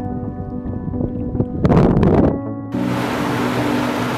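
Background music with sustained tones. A brief rushing noise near the middle, then, about two-thirds of the way in, the steady rush of a mountain cascade comes in under the music.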